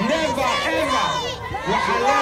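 A crowd of demonstrators shouting together, many voices overlapping, with a high shrill cry cutting through briefly a little past one second in.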